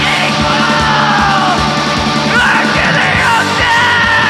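Loud live heavy rock music: a drum kit keeping up steady hits under electric bass and distorted guitars, with a shouted, screamed vocal over it.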